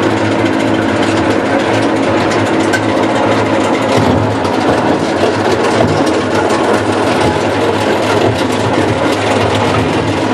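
Shred-Pax G-12 secondary grinder running steadily on its 100-hp three-phase electric motor, with a steady hum and a dense rattle of tire chips being fed in and ground.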